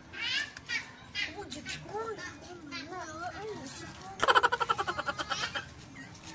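People's voices talking in the background, with a loud burst of rapid, pulsed laughter about four seconds in.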